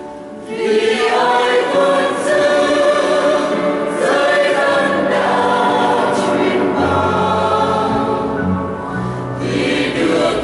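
Mixed choir of women's and men's voices singing a Vietnamese hymn with piano accompaniment; the choir comes in about half a second in, after the piano.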